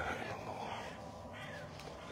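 Faint, harsh bird calls: about three short calls spread across two seconds.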